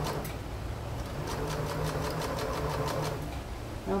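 Domestic electric sewing machine stitching fabric in quick, even needle strokes, about six or seven a second over a low motor hum. It pauses just after the start, runs again from about a second in, and stops a little after three seconds.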